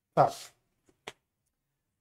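A man's voice says one short word, then a single sharp click about a second in, with near silence around it.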